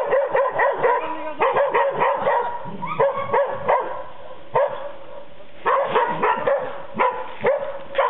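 Young hunting dogs barking and yelping in rapid volleys of short, high calls, several a second, with two brief lulls in the middle: dogs giving tongue while working game during training in an enclosure.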